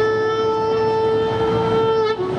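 Blues harmonica holding one long, steady note during a live instrumental passage.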